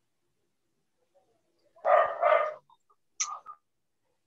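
A dog barking: two loud barks in quick succession about two seconds in, then a shorter, higher bark a second later.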